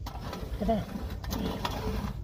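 A folding sheet-metal wood stove is handled on a table, giving a few light metallic clicks in the second half, over a steady low rumble.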